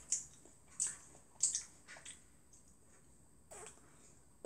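Crisp bites and chewing of a large raw apple: about four short crunches in the first two seconds, then quieter chewing.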